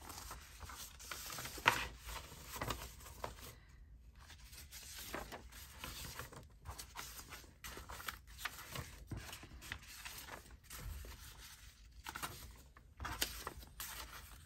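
Sheets of paper and card handled by hand: rustling, sliding against each other and being laid down on a cutting mat in a run of small, uneven bursts.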